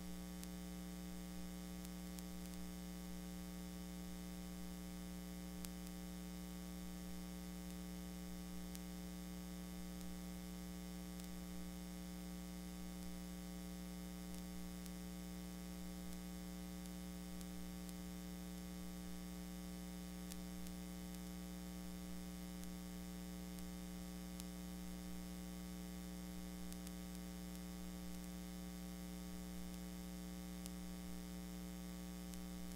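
Steady electrical mains hum with several fixed tones, over a constant hiss and faint scattered ticks of static; there is no programme sound.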